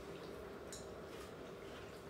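Quiet room tone with a faint steady hum and one faint click less than a second in.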